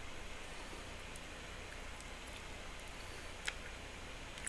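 A metal spoon clicking faintly in a plastic yogurt cup, with one sharper click about three and a half seconds in, over a steady low hum of room noise.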